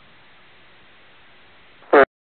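Steady faint hiss of an aviation-band radio receiver on the tower frequency between transmissions. Right at the end, a fraction of a second of a new voice transmission starts and is cut off.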